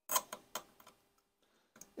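Steel dental pick scraping and ticking against a brass door hinge as it chips away layers of latex paint around the hinge screws: several sharp ticks in the first second, and a faint one near the end.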